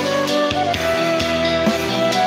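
Karaoke backing music playing, with sustained guitar or keyboard notes over a steady drum beat.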